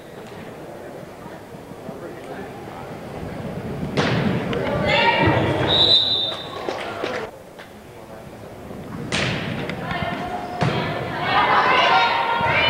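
A volleyball being struck hard twice, about four seconds in and again near nine seconds, in a large reverberant gym. Between the hits come a short referee's whistle blast as the ball goes down, and players and spectators shouting, which rises to cheering near the end.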